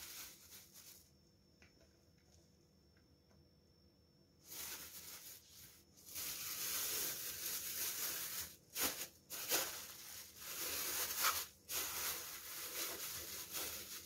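Thin plastic bag crinkling and rustling as grated carrot is pressed down inside it by hand, in uneven bursts starting about four seconds in.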